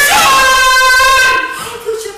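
A woman's loud, long high-pitched vocal cry, held on one pitch and cutting off about one and a half seconds in. Quieter voice sounds follow.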